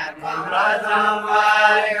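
A group of voices singing a Deuda folk song together in chorus, a far-western Nepali chant-like melody with long held notes and a short breath between phrases near the start.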